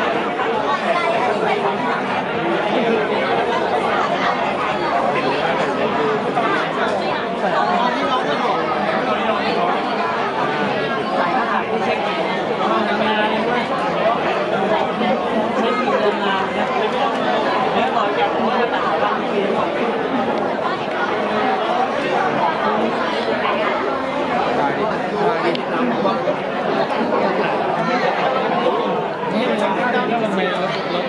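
Several people talking at once: steady overlapping chatter with no single clear voice standing out, in a reverberant hall.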